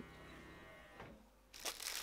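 Plastic bubble wrap and packaging crinkling as it is handled, starting about a second and a half in after a quiet stretch with one small click.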